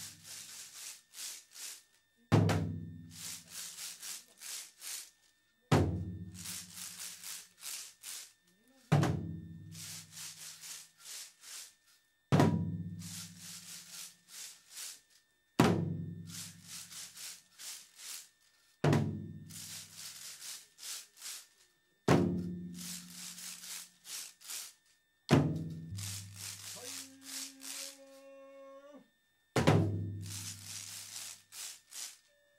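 Dengaku ensemble: waist-worn drums struck in unison about every three seconds, each beat ringing and dying away, with the wooden slats of binzasara clappers clacking in the gaps between beats. A drawn-out pitched call sounds shortly before the end.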